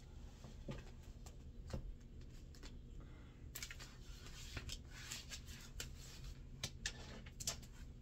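A deck of astrology oracle cards shuffled by hand: a run of faint, quick card clicks and rustles that gets busier about halfway through, over a low steady hum.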